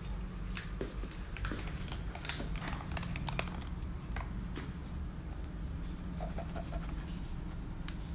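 Metal measuring scoop digging into loose black tea leaves in a foil tea bag: scattered small clicks, scrapes and foil crinkles, over a low steady hum.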